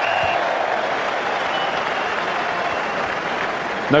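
Large stadium crowd cheering and applauding an England try, a steady roar of many voices and clapping.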